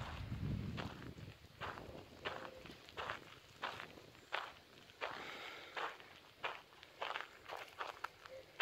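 Footsteps of someone walking at a steady pace on a sandy dirt path, each step a short scuffing crunch, about three steps every two seconds.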